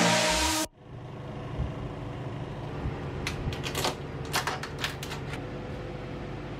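Electronic music cuts off suddenly under a second in, leaving a low steady hum. From about three seconds in come clusters of sharp clicks and taps of plates and a serving utensil as food is dished out at a table.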